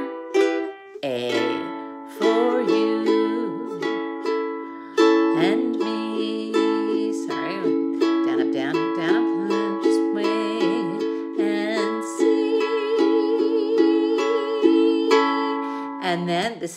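KLOS carbon-fibre ukulele strummed in a steady rhythmic pattern, the chords changing every few seconds.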